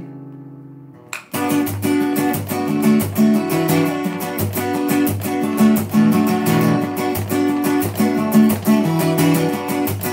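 Steel-string acoustic guitar with a capo, strummed: a chord rings and dies away for about a second, then steady rhythmic strumming of chords starts up again and runs on.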